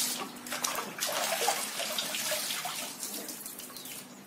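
Water splashing and sloshing in a plastic tub as a puppy is washed by hand, the splashing busiest in the first couple of seconds and dying down toward the end as the puppy is lifted out.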